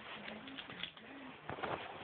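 A bird cooing in short, low notes that step up and down, with a burst of sharp clicks and knocks about three-quarters of the way in.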